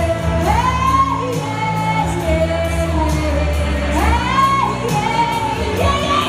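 A woman singing into a handheld microphone, sliding up into long held notes, over backing music with a steady bass line and a regular beat.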